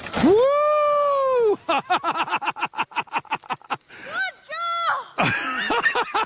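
A child yelling while riding a plastic sled down a snowy hill: one long, loud yell, then a fast stuttering run of short voice sounds for about two seconds, then a few shorter high shouts near the end.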